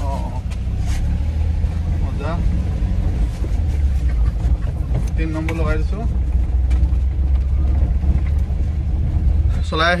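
A small pickup truck's engine and drivetrain running while driving, heard from inside the cab as a steady low rumble.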